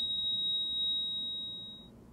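Heart monitor flatline tone: one steady, high-pitched beep held for nearly two seconds, fading away and stopping just before the end. It is the signal of a heart that has stopped beating.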